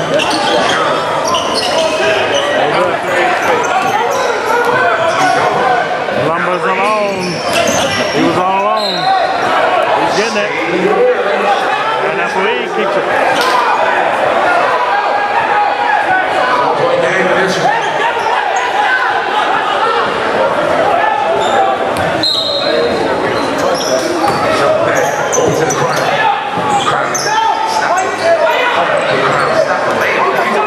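Basketball dribbled and bouncing on a hardwood gym floor during live play, amid steady, echoing chatter and shouts from players and spectators in the gymnasium.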